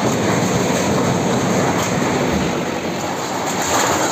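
A backhoe loader's diesel engine running under load while its arm pushes down and crumples corrugated metal sheeting, with a continuous rumbling clatter and scraping of metal.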